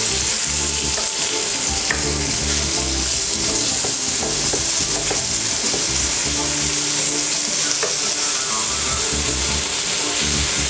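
Chicken pieces frying in a pan, a steady high sizzle, stirred with a utensil that clicks against the pan now and then.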